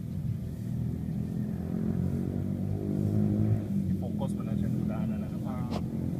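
A low, steady engine-like hum that swells around the middle, with voices talking quietly near the end.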